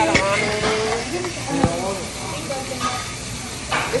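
Voices talking around a restaurant table over a steady sizzling hiss, with two sharp clicks, one just after the start and one about a second and a half in.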